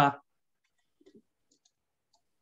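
A man's voice saying the syllable "ta" right at the start, then near silence broken by a few faint, short clicks about a second in.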